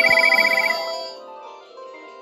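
Several Panasonic cordless phone handsets ringing at once with electronic ringtones: a fast, high warbling trill layered over overlapping melodic tones. The ringing drops away sharply about a second in.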